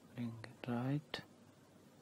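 A man's brief wordless hesitation sound, a short 'uh' then 'mm', with two short clicks, one during it and one just after.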